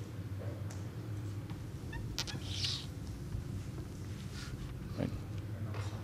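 Quiet hall room tone: a steady low hum with faint scattered clicks and shuffling, and a brief hissy rustle about two and a half seconds in.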